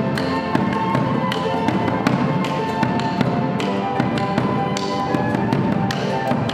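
Live chamber music: flutes and cello playing sustained melodic lines over a hand-held frame drum struck with a beater about two or three times a second.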